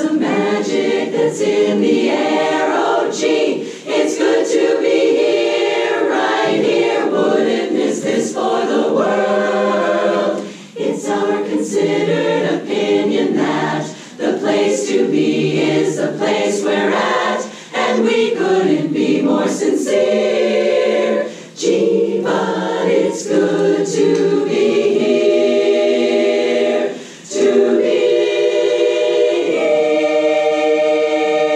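Women's chorus singing a cappella, the phrases broken by brief breath pauses every few seconds.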